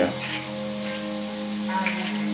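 Bacon, onions, peppers and green beans frying in a cast iron skillet, a steady sizzle, with a steady background hum of held tones.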